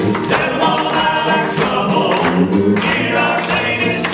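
Southern gospel male vocal trio singing in harmony into microphones, over accompaniment with a steady beat.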